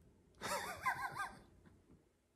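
A man's stifled laugh, a high, wavering voiced sound about half a second in that lasts about a second.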